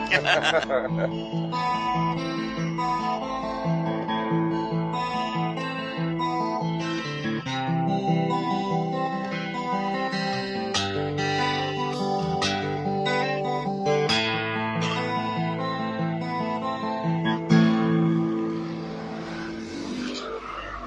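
Acoustic guitar played at a steady moderate level, a continuous run of picked notes and chords.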